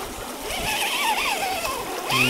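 Axial SCX10 II Jeep Cherokee RC crawler's electric motor and gears whining under load as it climbs a sandy slope. The pitch wavers up and down with the throttle, over a steady hiss.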